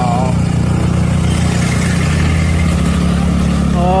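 The engine of the moving vehicle carrying the camera, running steadily with a low drone, along with road and wind noise in traffic.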